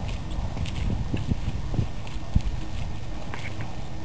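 Low rumble of a small motorised rail trolley (Lore) running on narrow-gauge track, with irregular clacks from the wheels on the rails; the sharpest clack comes a little past the middle.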